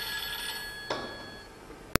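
A ceramic cup set down on its saucer, ringing with several steady high tones that fade away, with a light clink about a second in and a sharp click at the very end.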